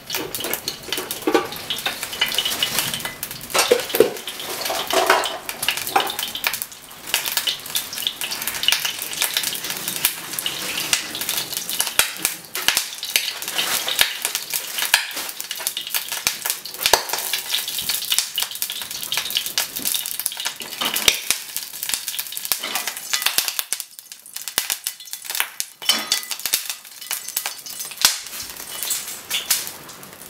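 Sizzling and crackling from a small nonstick frying pan heating on a gas burner, dense with little spits and pops throughout.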